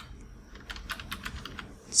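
Computer keyboard typing: a quick run of keystrokes, starting about half a second in and running on until just before the end.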